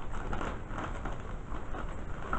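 Light rustling and handling noise of a small skincare product being picked up, over a steady background hiss and low rumble.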